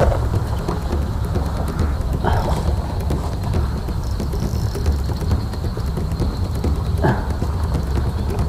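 Steady low wind rumble on the microphone, with faint scattered crackles and two brief voice sounds, about two seconds in and near seven seconds.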